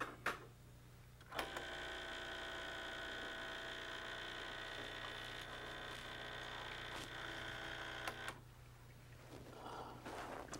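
Starbucks Barista espresso machine's vibration pump running for about seven seconds with a steady buzzing hum, pushing hot water through the empty portafilter into a glass to warm it. It starts just after a button click about a second in and cuts off sharply near the end. A low electrical mains hum runs underneath throughout.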